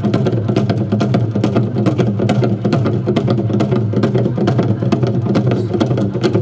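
An ensemble of Korean barrel drums (buk) beaten with sticks, playing a fast, dense, continuous rhythm.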